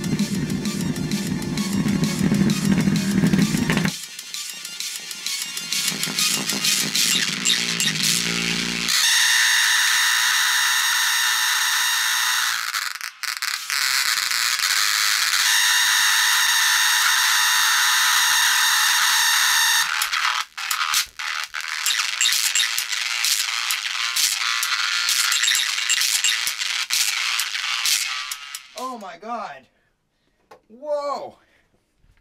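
Paradigm bookshelf speakers blasting a loud audio track, driven hard into harsh distortion while they are being blown. The bass drops out about four seconds in, leaving a loud buzzy treble with long held tones, and the sound fades out near the end as the speakers smoke and fail.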